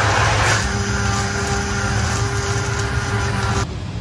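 Immersion blender running in a small aluminium pan of pork-bone ramen soup with spicy miso paste: a steady motor whine over churning liquid. It cuts off about three and a half seconds in.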